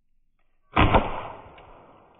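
A Byrna SD CO2 launcher fires once: a sharp double crack about three-quarters of a second in as the .68-calibre Eco Kinetic powder practice round is shot and bursts on the target board, then the sound rings away over the next second or so.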